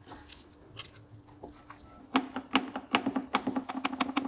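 Hand pump clicking quickly and evenly, about four to five clicks a second, as gear oil is pumped into a transfer case fill hole. The clicking starts about two seconds in, over a steady low hum.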